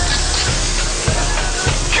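Sliced mushrooms and shallots sizzling in oil in a hot frying pan, under background music with a steady beat of about two thuds a second.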